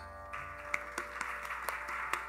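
Tambura drone sustaining steadily and quietly after the mridangam has stopped, with a few faint isolated clicks over it.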